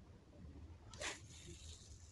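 A fishing rod being cast: a sudden swish about a second in, followed by a thin hiss of line paying out from the spinning reel. Faint overall.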